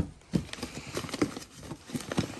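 Hands rummaging through a plastic parts tray of bagged parts and paperwork: irregular light clicks and knocks against the tray, with rustling of plastic bags and paper.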